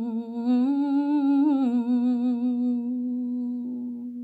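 A single voice humming one long held note, wavering slightly in pitch and settling a little lower about a second and a half in.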